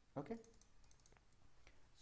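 A few faint computer mouse clicks: a quick cluster about a second in, then single clicks.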